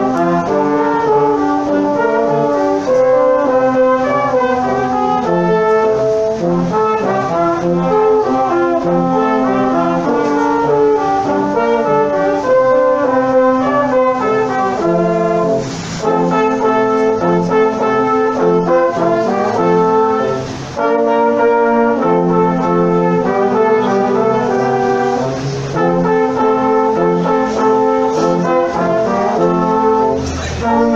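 A brass quintet of two trumpets, French horn, trombone and tuba playing an arranged piece together, with brief breaks in the sound about 16 and 21 seconds in.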